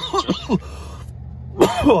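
A man coughing hard into his fist: a quick run of several coughs at the start, then another loud cough near the end.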